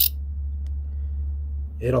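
A steady low hum with a sharp click at the start and a fainter click shortly after; a man starts speaking near the end.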